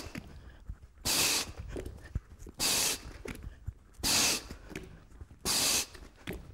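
Sharp, forceful exhalations, one about every second and a half, each timed to an explosive push-up with a medicine ball. Soft thuds of hands and ball landing on the mat come between them.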